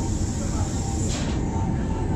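Electric rack-railway car running steadily, heard from inside the cabin by an open window: a continuous low rumble with a thin steady whine over it and a brief rushing sound just past halfway.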